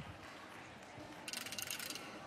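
Faint arena background, then a rapid run of sharp mechanical clicks lasting about half a second, starting a little over a second in.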